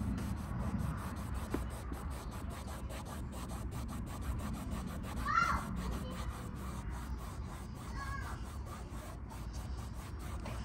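Microfiber towel scrubbing a plastic bumper trim piece, wet with isopropyl alcohol to rub off leftover paint drips: a steady rubbing, with two short high chirps about five and eight seconds in.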